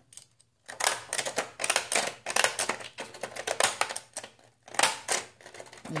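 Decorative-edge craft scissors snipping through construction paper in a quick run of short clicking strokes, about four or five a second. The blade has a fine, delicate pattern whose little teeth catch on the paper, making the cut harder.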